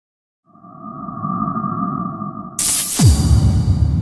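Electronic logo intro sting: two held tones over a low rumble, then a sudden bright hit about two and a half seconds in and a deep boom falling sharply in pitch just after.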